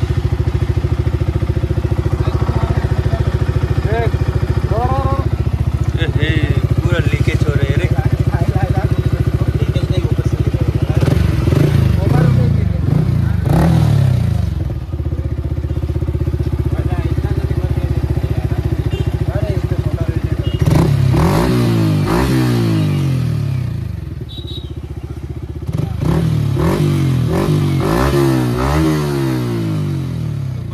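Yamaha R15 V4's 155 cc single-cylinder engine idling steadily, revved up and back down three times starting about eleven seconds in.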